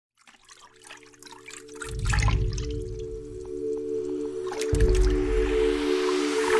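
Music with a sustained drone that fades in from silence, and deep bass swells about two seconds in and again near the end. Dripping, bubbling water effects sound over it.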